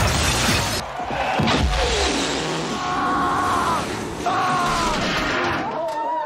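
A loud crash with breaking glass right at the start as a heavy man falls onto a table, over loud music that plays on through the rest.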